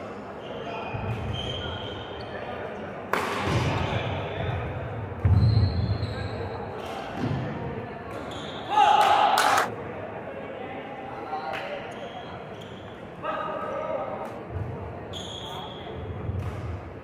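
Badminton singles rally on a wooden indoor court: racket strikes on the shuttlecock, shoe squeaks and footfalls in a large hall, with heavier thuds about five seconds in.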